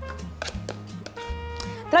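Soft background music with held notes, and a few light clicks.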